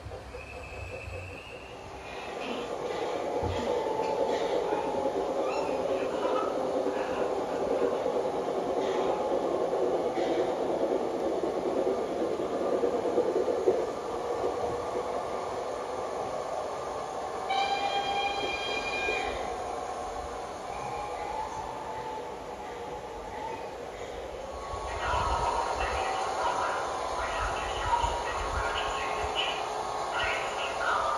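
G-scale garden-railway model trains rolling over the track, the wheels clattering steadily and loudest in the first half. About halfway through, a model locomotive's sound decoder gives one whistle lasting about two seconds.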